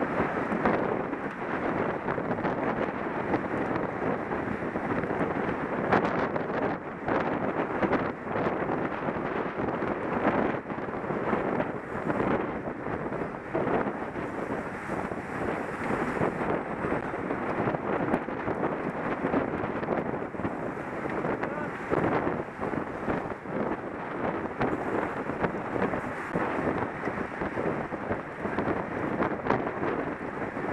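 Wind rushing over a helmet camera's microphone on a moving racing bicycle in a pack of riders: a steady rush that swells and dips unevenly.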